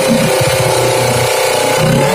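Kawasaki Ninja 250 FI parallel-twin engine idling steadily.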